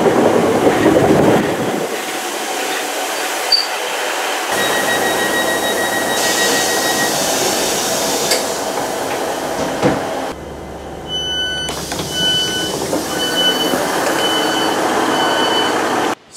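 Diesel multiple unit train sounds in a few spliced clips: the engine and carriage running, with abrupt changes between clips. Near the end comes a run of short door-warning beeps, a little over half a second apart.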